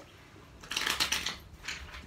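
A deck of Divine Circus Oracle cards rustling as it is handled for a card to be drawn: two short papery rustles, the first about three-quarters of a second in and a shorter one near the end.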